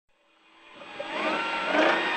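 Rally car engine revving, heard inside the cabin, fading in from silence and climbing steadily in pitch as the revs are raised.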